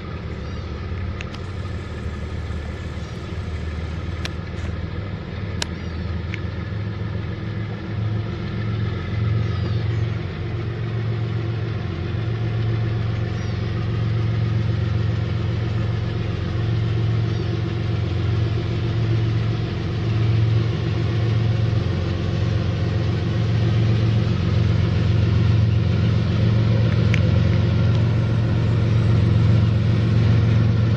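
Diesel locomotives at the head of a freight train, their engines running with a steady low hum that grows louder as the train approaches.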